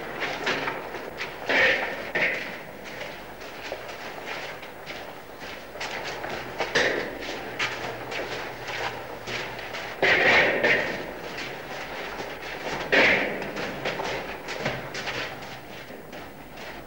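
Cavers wading and scrambling through a wet cave passage: irregular splashes of water with knocks and scrapes of boots and gear on rock. Louder splashes come about two, seven, ten and thirteen seconds in.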